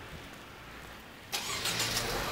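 A car engine starting about a second and a half in, then running steadily.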